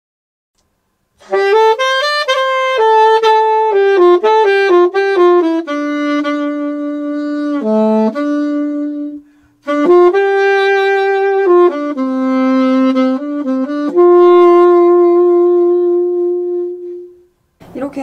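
Solo alto saxophone playing a slow melodic phrase in two parts, decorated with pralltriller ornaments: quick flicks up one note and back to the main note, made with half-opened keys. It starts about a second in, breaks briefly about halfway, and closes on a long held note.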